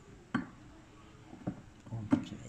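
A pan-support peg being pushed and worked into its socket in the plastic top of a digital price computing scale: a sharp knock about a third of a second in, then two lighter clicks near the end.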